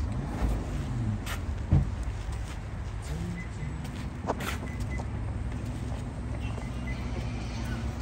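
Idling Rolls-Royce SUV engine, a low steady rumble, with a sharp knock a little under two seconds in.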